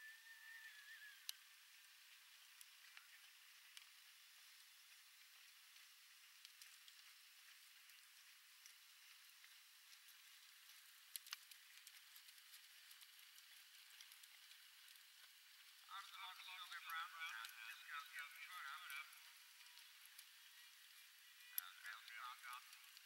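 Near silence: faint outdoor hiss with a few scattered clicks, and a distant voice talking for about three seconds late on.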